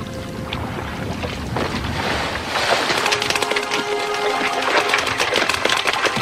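Water splashing and churning, building up from about two seconds in, as a fishing net full of fish is hauled up at the side of a boat, with soft background music underneath.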